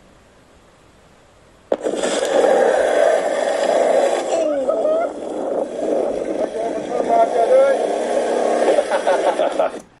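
Video footage playing back from an editor: first a faint hiss where the microphone recorded nothing, then about two seconds in the recorded sound suddenly cuts back in, carrying voices, and stops just before the end. The silent stretch is a microphone dropout during filming, which the owner suspects comes from a bad cable.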